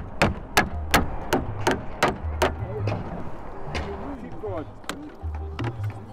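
Slater's hammer striking a roofing slate to punch nail holes: a quick run of about seven sharp, even taps, then a few single knocks. Background music plays underneath.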